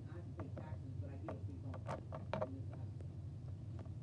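Small plastic toy figures being handled, with irregular light clicks and taps as a tiny toy scrubber is rubbed over a pet figure. A low steady room hum runs underneath.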